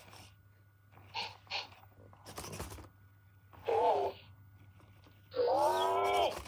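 Loona robot pet making synthesized animal-like vocal sounds while playing its bullfighting game: a few short noisy bursts, a short wavering call about four seconds in, then a longer, louder call near the end.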